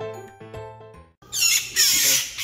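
Light music with bell-like notes fades out, then about a second in a young magpie breaks into loud, harsh, raspy screams, the distress calls of a bird being handled.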